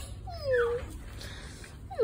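Puppy whimpering: one falling whine about half a second in, and another starting at the very end.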